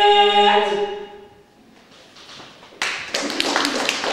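Cossack folk ensemble of three women and a man singing a cappella, holding the last chord of the song, which stops about half a second in and dies away in the hall. After a short lull, audience applause starts near the three-second mark.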